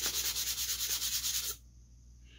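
Spongy sanding block rubbed in quick back-and-forth strokes along a crossbow bolt's shaft, scuffing off old vane glue residue to prepare it for new vanes. The strokes stop about one and a half seconds in.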